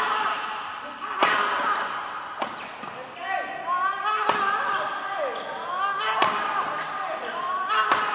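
Badminton racket strikes on a shuttlecock during a fast rally: four sharp hits spaced one to two seconds apart. Between them come short sliding squeaks of court shoes on the floor.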